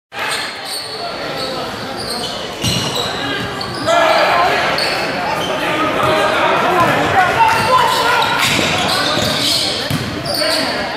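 Basketball being dribbled and bounced on a hardwood gym floor, with players and spectators shouting and calling out, echoing through the hall. The voices get louder about four seconds in.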